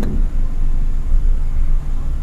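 A steady, loud low rumble of background noise, carrying on unchanged through the pause in speech.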